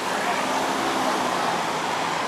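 Steady road traffic noise from cars and motorcycles on a multi-lane city road, with a low engine hum underneath.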